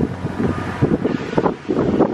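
Breeze blowing across the microphone, rumbling in uneven gusts.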